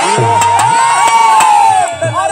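A woman singer holding one long high note through a microphone, sliding up into it at the start and dropping off near the end, with a few sharp knocks underneath.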